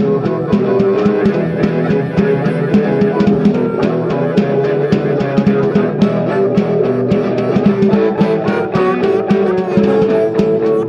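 Instrumental passage of a live blues shuffle: electric guitar playing over a snare drum struck with brushes in a steady beat.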